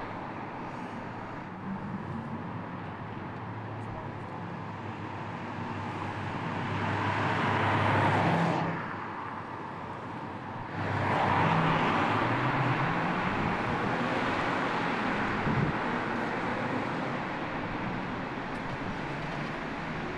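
Car tyre and road noise on a city street: a car passes, building to a peak about eight seconds in and cutting off abruptly. A second pass surges up near eleven seconds and slowly fades away.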